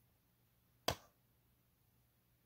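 A single sharp click about a second in: a poly-resin figure's magnetized tail piece snapping into place against the body.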